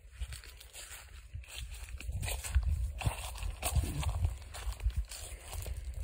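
Footsteps on dry leaf litter and mulch, with scattered rustles and a low, uneven rumble on the phone's microphone.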